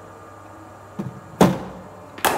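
Bowling machine firing a cricket ball: a faint click about a second in, then a single loud knock that rings on in the hall.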